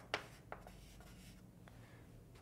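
Writing by hand: a few short, faint scratches and taps of a writing tool as an equation is written out.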